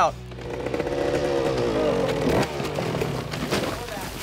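Dirt bike engine revving as the rider goes down a steep sand drop; the engine note breaks off about two and a half seconds in as the bike tips over and goes down in the dirt.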